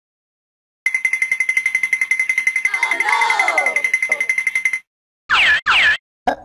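Dubbed-in sound effects: a rapid, steady ringing buzz like an alarm bell for about four seconds, then two quick falling whistle-like swoops near the end.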